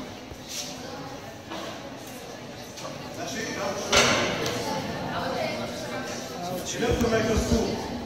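Indistinct talking in an echoing room, with one sharp knock about halfway through.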